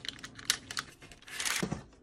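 Brown kraft paper being folded and creased by hand on a table. There are several light clicking taps and crisp paper rustles, with a louder crinkle about a second and a half in.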